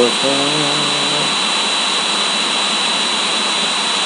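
A man's unaccompanied singing voice holds and bends the last note of a line for about the first second. After that, only a loud steady hiss with a thin high whine remains.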